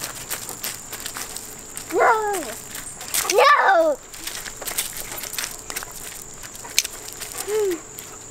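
A young child's wordless cries: a short one about two seconds in, a louder rising-and-falling one a second later, and a brief one near the end, over small scattered crunches of feet and paws on gravel.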